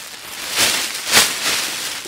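Mylar survival blanket rustling and crinkling as it is shaken out and spread, with two loud swishes about half a second apart.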